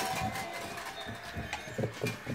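Puppies playing on a tile floor: irregular soft knocks and scrapes, with a slightly louder knock just before the end.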